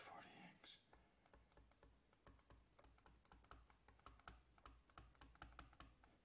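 Faint, irregular run of light taps and clicks from a stylus on a tablet screen as an equation is handwritten.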